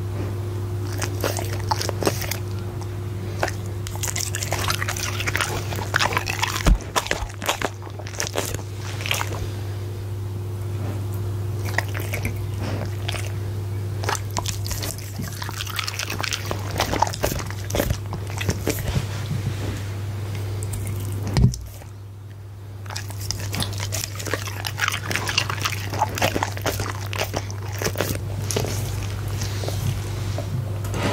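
Goldendoodle chewing and biting rare steak close to the microphone: irregular wet smacks and chewing clicks over a steady low hum. There is one sharp knock about two-thirds of the way through.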